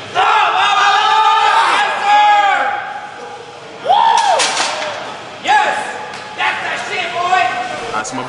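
Several men yelling loud, drawn-out shouts of encouragement at a lifter straining through a heavy barbell squat, the yells rising and falling in pitch and coming in waves.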